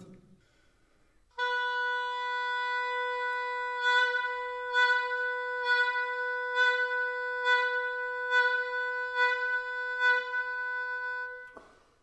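Oboe holding one steady mid-range note for about ten seconds, with regular swells about once a second. The swells are accents pushed from the mouth over a quiet sustained tone, an exercise toward vibrato.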